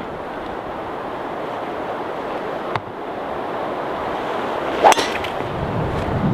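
A driver striking a golf ball off the tee: one sharp crack about five seconds in, over a steady rush of wind on the microphone.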